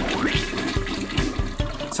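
A toilet-flush sound effect, a rushing of water, over a beat of low thumps about two to three a second.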